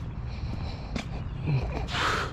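Two footsteps on pavement about a second apart, heard over a steady low rumble.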